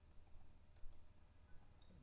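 Near silence: room tone with a couple of faint computer-mouse clicks.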